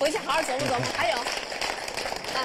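Speech: a voice talking, with more background noise in the second half.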